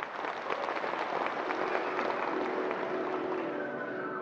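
Audience applauding in a theatre after a piece ends: a dense patter of many hands clapping that eases off toward the end.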